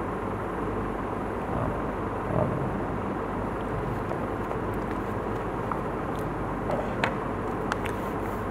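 Steady background hum and hiss, with a few faint clicks near the end.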